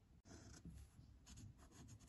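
Faint scratching of a red marker drawn along the straight edge of a protractor on paper, ruling a line in a few short strokes.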